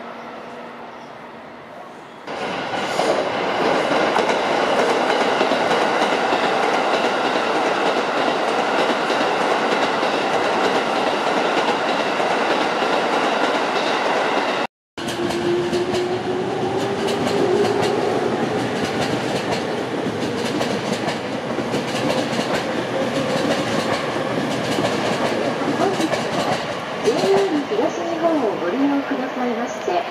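Electric commuter trains on the JR Sobu Line. From about two seconds in, a train runs loudly through the station with wheel-on-rail noise. After an abrupt cut, a yellow-striped Chuo-Sobu local train moves off with a slowly rising motor whine under the rail noise.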